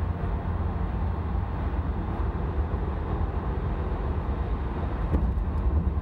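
Steady low rumble of a car on the road, with engine and tyre noise heard from inside the cabin.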